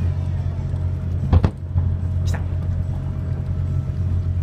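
Steady low hum of a yakatabune's engine running. One sharp firework bang comes about a second and a half in.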